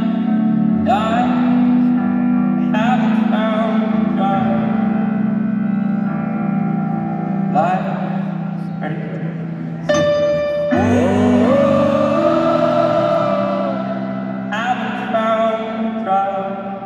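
Live piano-led music through an arena PA, with sustained chords under a singing voice whose melody rises and falls in several phrases, heard with the large hall's reverberation.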